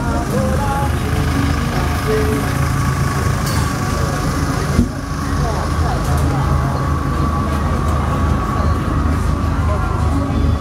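An engine running steadily at idle, a constant low hum, with people talking over it.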